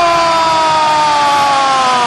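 A loud, sustained siren-like tone with several overtones, sliding slowly downward in pitch, like a held note being slowed down.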